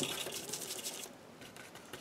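Paintbrush working oil paint on a palette, a soft scratchy rustle of bristles that is strongest in the first second and then fades.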